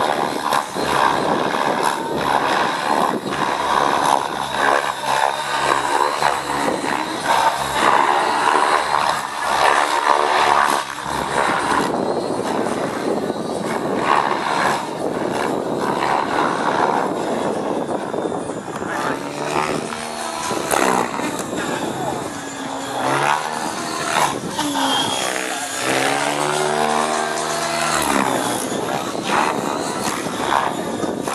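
Align T-Rex 700-class flybarless RC helicopter flying hard 3D aerobatics: a continuous rotor whoosh, with the pitch of the rotor and drive rising and falling as it swings through the manoeuvres and passes close by.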